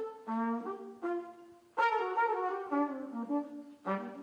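Jazz trumpet phrase of held notes, backed by big band brass chords; the music drops away briefly about one and a half seconds in and comes back with a louder phrase.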